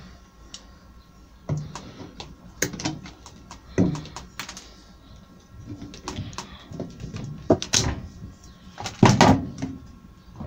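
Metal paint tin and the clamp band round its lid being handled with a hand tool: a run of irregular metallic clicks and knocks, the loudest about nine seconds in.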